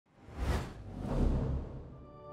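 Intro whoosh sound effect: a rushing swell that peaks about half a second in, a second softer swell a little later, over a deep low rumble, fading toward the end.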